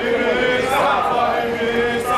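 A crowd of protesters chanting a slogan in unison, the voices drawing out long syllables together.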